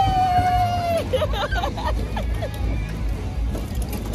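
A woman's drawn-out squeal lasting about a second, then laughter and excited voices, over fairground music and a steady low rumble from the moving kiddie ride.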